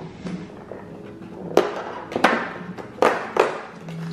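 Cardboard door of a Baci Perugina advent calendar being pressed in and torn open along its perforation with the fingers. About four sharp snaps of card come over the second half.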